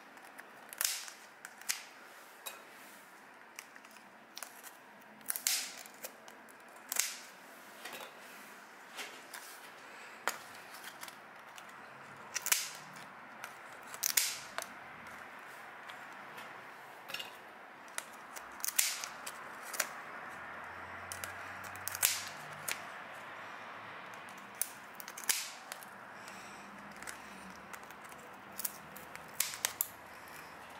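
Kitchen scissors snipping through a giant isopod's legs and shell: a string of sharp, brief clicks at irregular intervals.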